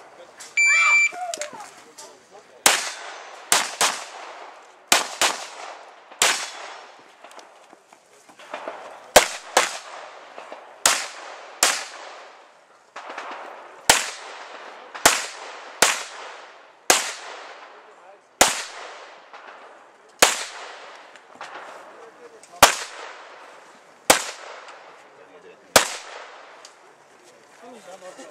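An IPSC shot timer's start beep about a second in, then a competitor's pistol firing about two dozen shots over the stage, mostly in quick pairs with pauses between groups, each shot echoing briefly off the range berms.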